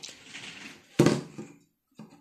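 A homemade PVC-pipe grip handle with rope and strap being handled on a wooden table: faint rustling, then a single sharp knock about a second in.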